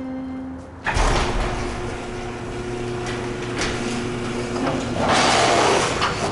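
A heavy prison gate's mechanism starting up: a sudden loud clank about a second in, then a steady mechanical drone and rattle that swells louder near the end.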